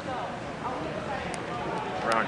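Indistinct voices talking in the background, with one short sharp click a little past halfway.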